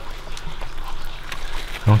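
Hands rustling a cotton cloth wrapped around a freshly burst fruit, with a few faint soft clicks.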